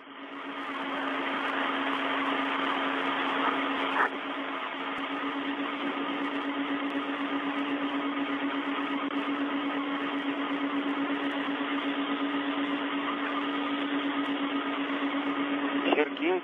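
Steady hiss with a constant low hum from an open space-to-ground radio channel during a spacewalk, with a single click about four seconds in.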